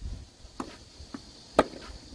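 A tennis ball being struck by rackets and bouncing during a rally: four short, sharp pops, the loudest about one and a half seconds in.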